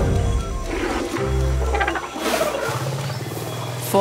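Low rumbling calls of forest elephants heard over background music, in two stretches: one in the first half, one running into the end.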